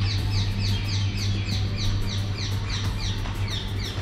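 A bird chirping in a fast, even series of short falling notes, about four a second, over a steady low hum.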